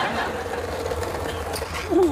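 Skateboard wheels rolling steadily along an asphalt path.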